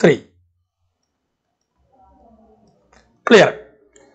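Speech only: two short spoken words, one at the start and one about three seconds in, with a quiet pause between them.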